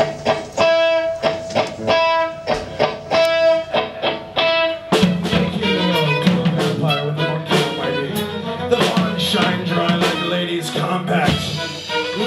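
A live ensemble of string quartet, electric guitar, baritone sax and drums plays an instrumental introduction. For the first five seconds one high note is repeated in short strokes over light percussive clicks. Then the full band comes in at once, thick and low.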